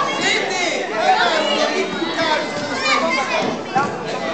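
Crowd chatter in a large gym hall: many adults and children talking at once, with high children's voices standing out.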